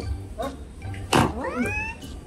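A cat's meow dropped in as a comic sound effect, a short sharp hit followed by a high call rising in pitch, over light background music.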